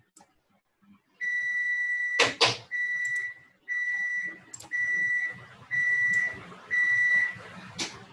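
Electronic beeping: a steady, high-pitched tone repeating about once a second, six beeps with the first one longest. A couple of loud, sharp clicks land about two seconds in.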